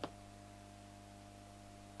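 Faint steady electrical hum from an energized stepper motor and its driver holding a load, with a soft click right at the start.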